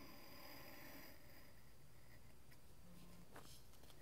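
Near silence: faint room tone with a light scratch and a few faint ticks from an X-Acto craft knife cutting a foam sheet.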